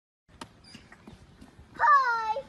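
A puppy giving a single high-pitched yelp near the end, jumping up sharply and then sliding down in pitch.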